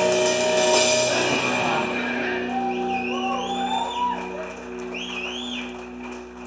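A pop-punk band plays live with drums, cymbals and electric guitars, ending a passage about a second and a half in. Sustained guitar and amp tones then ring on, with a few high sliding squeals.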